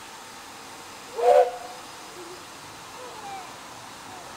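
One short, loud whistle toot from a steam locomotive about a second in, a hollow chord of several tones with a breathy edge, over steady outdoor background.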